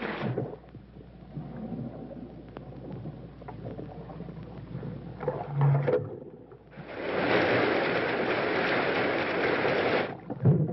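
A splash as a man goes under in a flooded water tank, then a few seconds of muffled sounds underwater. About seven seconds in, a loud, steady rush of water starts as the drain valve at the bottom of the tank is opened and the water pours out.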